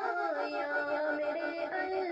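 Background song: a solo voice singing a slow melody with long, wavering held notes over a soft accompaniment.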